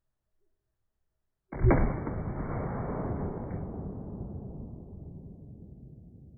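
.300 Blackout AR-15 firing one round into a ballistic gel block, a sudden dull report about a second and a half in, followed by a long rumbling decay that fades over about four seconds.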